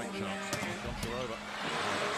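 Background music over arena crowd noise, with two sharp hits of the volleyball about half a second apart during a rally.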